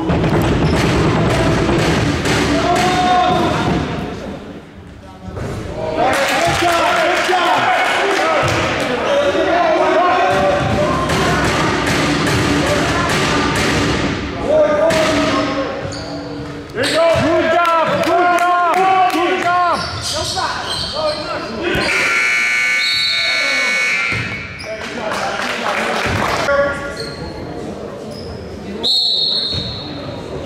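A basketball bouncing on a gym's hardwood floor during a game, with players' voices and calls echoing around the hall. A short high whistle sounds near the end.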